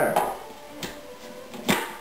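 Plastic food processor lid and feed-tube pusher being fitted into place: a faint click a little under a second in, then a sharper click near the end.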